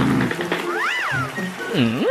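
Background music with a bass line, over which a comic sound effect glides up and back down in pitch about a second in, followed near the end by a lower swooping glide that dips and rises.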